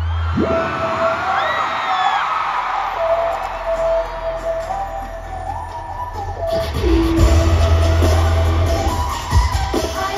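K-pop song played loudly over a stadium PA, with a held, stepping synth line. Its deep bass drops out just after the start and comes back strongly about seven seconds in. A large crowd screams and whoops over it, most of all in the first few seconds.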